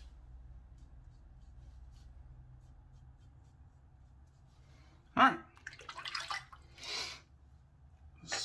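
Safety razor shave with only a faint low hum for the first few seconds. About five seconds in, a short throat sound, then a few brief splashes of water as the razor is rinsed.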